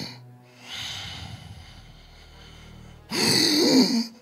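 A man's heavy, strained breathing into a microphone: an audible breath about a second in, then a loud gasping groan near the end. A low held keyboard note sounds underneath.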